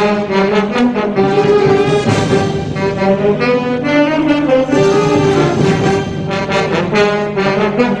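A student band of saxophones, trombones, French horns and tuba playing live together, with held brass chords and moving melody notes throughout.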